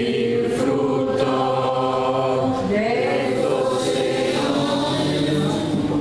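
Several voices singing a slow hymn together, holding long notes that change pitch every second or so.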